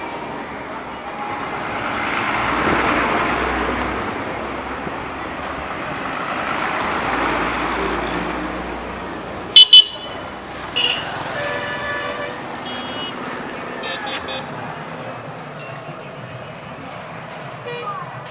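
Street traffic heard from a moving motorbike: a steady rush of road and wind noise that swells twice, then about halfway two very loud, short horn toots in quick succession, followed by another toot and a longer steady horn note, with a few fainter horn beeps after.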